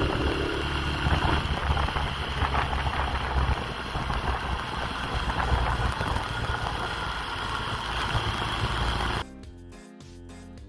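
Motorcycle running on the move, its engine mixed into heavy wind buffeting on the onboard microphone. About nine seconds in this cuts off abruptly and music takes over.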